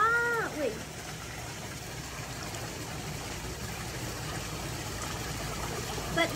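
Steady sound of water moving in a swimming pool, even and without distinct splashes, after a short voice sound at the very start.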